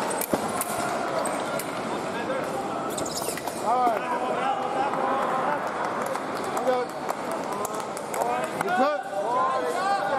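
Men's foil fencing bout: quick footwork on the piste with short squeaks and many light clicks and taps, among voices in a large hall. A cluster of squeaks and sharp sounds comes about four seconds in and again near the end, around the scoring touch.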